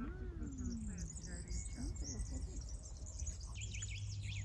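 Outdoor garden ambience: several small birds chirping and singing in quick, high notes over a low steady background rumble.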